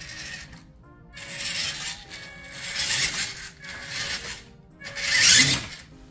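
Electric motor and gearbox of a WPL B36 RC truck whirring in about four throttle bursts while hauling a loaded trailer, the last and loudest near the end as it picks up speed.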